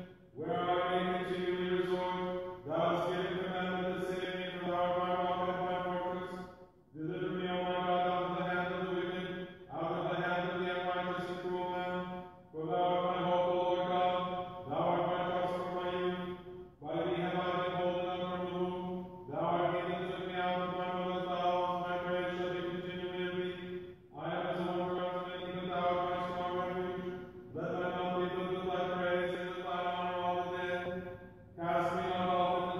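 A man chanting Orthodox liturgical prayers on a near-steady reciting tone, in phrases of a few seconds each with short breaks for breath between them.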